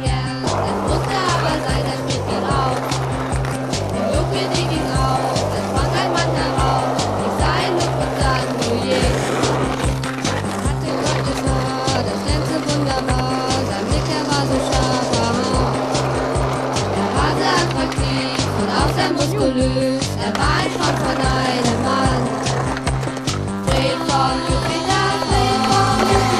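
A music track with a steady, repeating bass beat, over which skateboard sounds are heard: wheels rolling on concrete and the board clacking as it lands and grinds during tricks.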